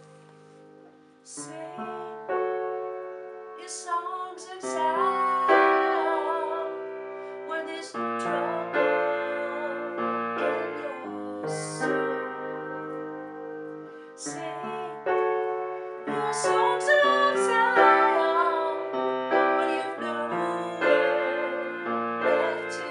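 Unamplified upright acoustic piano played in chords, with a woman singing over it. A held note dies away at the start and the playing picks up again about a second in.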